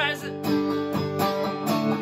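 Solo electric guitar strummed in sustained chords, a strum about every half second, with the tail of a sung note fading out just at the start.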